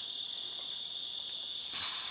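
Evening insects trilling: one steady, unbroken high-pitched drone.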